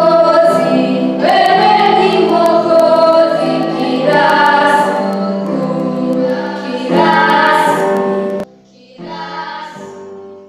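Children singing a worship song together in long held phrases. About eight and a half seconds in, the singing drops off sharply, then carries on more quietly.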